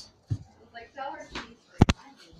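Faint movement noise, then two sharp knocks in quick succession near the end.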